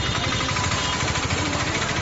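Noisy outdoor street sound from a phone recording: a steady, dense rumble with rapid low pulsing and no clear voices.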